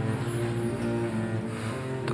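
Background score of low, sustained bowed-string tones.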